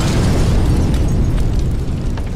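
Explosion-and-fire sound effect: a loud, deep rumble that holds steady, with crackles coming in past the middle.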